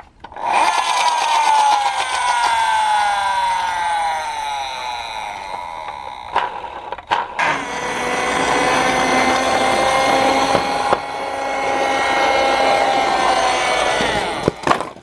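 Small electric motor and gears of a toy police car whining. The pitch falls steadily over the first six seconds. After a short break, a steadier whine runs from about seven seconds in as the car drives up a wooden ramp.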